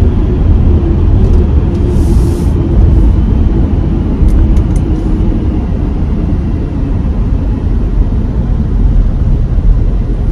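In-cabin driving noise of a 2023 Audi Q5 with its 2.0-litre turbocharged four-cylinder: a steady low rumble of tyres and drivetrain, with a faint tone that sinks slowly as the SUV slows down. A few faint high ticks come in the first half.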